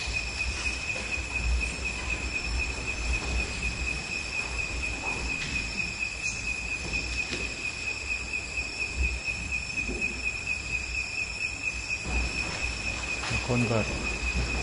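A steady, high-pitched insect trill over a low, uneven rumble of background noise.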